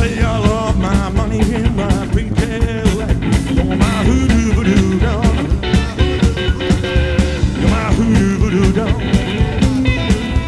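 Live rockabilly band playing: a Gretsch hollow-body electric guitar with wavering, bending lines over upright double bass and drums keeping a steady, driving beat.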